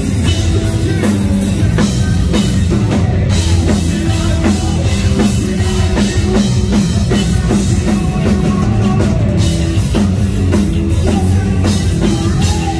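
Live rock band playing loudly: drum kit, electric bass and guitars, with the singer's lead vocals over them.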